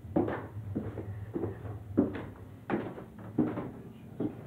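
Footsteps going down a flight of stairs, about one step every two-thirds of a second, over a steady low hum.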